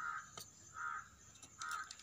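A crow cawing three times, about one harsh caw a second, with a couple of faint clicks between the calls.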